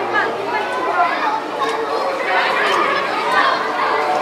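Background chatter of several people talking at once.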